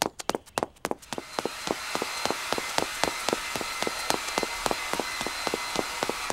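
Rapid high-heel footsteps clicking on a hard floor, about five steps a second, over a steady background hiss.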